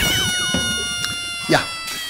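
Edited-in transition sound effect: a sustained chord of several tones that slide slowly down in pitch as it fades, with a short rising-and-falling glide about one and a half seconds in.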